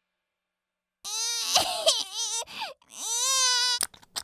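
Cartoon toddler crying, starting about a second in: a wavering, sobbing wail, then a second, longer wail that rises and holds. A few short clicks follow near the end.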